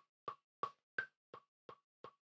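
Ardour's metronome click ticking faintly and evenly, about three clicks a second, with a higher-pitched accent click marking the first beat of the bar about a second in.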